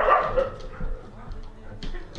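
A dog vocalizing: one loud call right at the start that trails off within about half a second, followed by quieter sounds.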